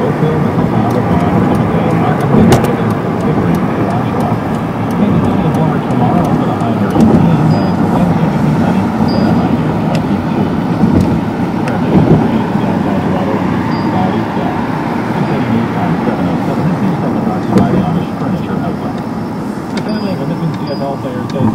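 Steady road and engine noise heard from inside a moving car's cabin, with indistinct voices underneath.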